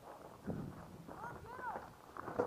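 Footsteps and a thump as a paintball player moves between bunkers, with a brief two-syllable call from a voice about halfway through.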